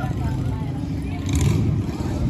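Motorcycle engines running nearby as a low, steady rumble that swells briefly about a second and a half in.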